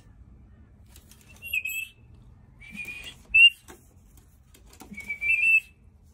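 Rainbow lorikeet giving short, high whistled chirps, four in all, the loudest a brief rising one about halfway through.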